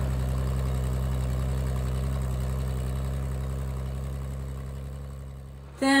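Tractor engine running steadily while pulling a corn planter, fading out over the last couple of seconds.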